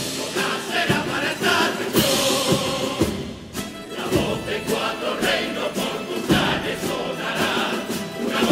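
Large male carnival choir singing together in full voice over instrumental accompaniment, with cymbal crashes marking the beat. The singing drops back briefly about three seconds in, then resumes at full strength.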